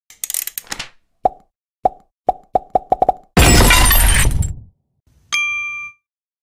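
Sound effects for a logo intro. A brief rattle opens it, then a run of sharp pops that come closer and closer together. A loud whoosh with a deep rumble follows for about a second, and near the end a bright chime rings out and fades.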